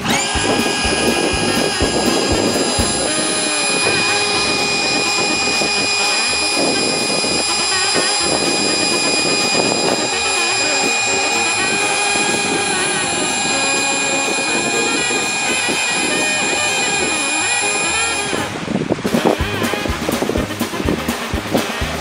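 Electric air pump running steadily, inflating an inflatable boat, with a steady whine; it stops about 18 seconds in. Background music plays underneath.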